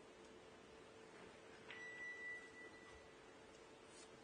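Near silence with a faint steady hum, broken once by a single steady high tone, beep-like, that starts with a faint click partway through and fades after about a second.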